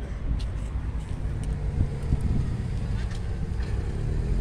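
Steady low outdoor rumble, with a few faint light clicks.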